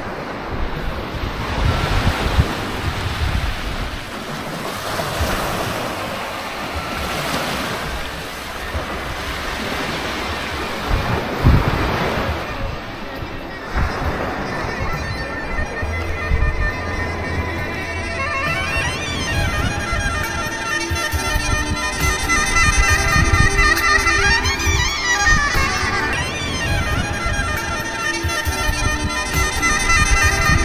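Sea surf washing on the beach, with wind gusting over the microphone. About halfway through, music comes in: a melody over a steady low drone.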